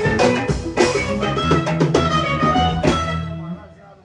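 Live band music with drums and guitar, stopping about three and a half seconds in as the song ends.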